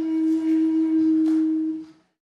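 End-blown wooden flute holding one long, steady low note with a light breathy edge, cut off suddenly near the end.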